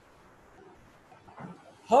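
Near silence with faint room hiss during a pause in speech; a man's voice starts speaking near the end.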